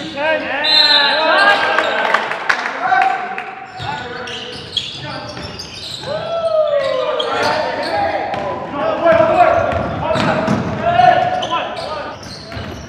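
A basketball bouncing on a hardwood gym floor and sneakers squeaking in short, high squeals as players cut and stop, with players' voices calling out.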